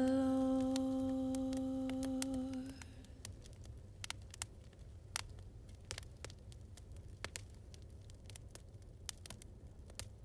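A long, steady hummed note from a singer that fades out about three seconds in. After it, a wood fire crackles on its own: scattered sharp pops over a low, steady rumble.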